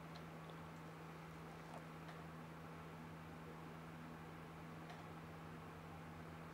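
Very quiet room tone with a low steady hum and a few faint, brief clicks.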